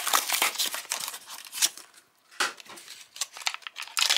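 Cardboard blister card being torn apart and its clear plastic blister crinkled while a die-cast toy car is freed from the packaging. A run of crackling, tearing noises with a short pause about halfway through.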